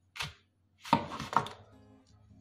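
Kitchen knife slicing through a dragon fruit and striking a wooden cutting board: a short cutting sound, then two sharp knocks about half a second apart.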